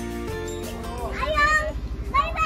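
Background music, then about a second in a long high-pitched call from a voice that rises and then holds. Under it runs the low, evenly pulsing beat of a boat's engine.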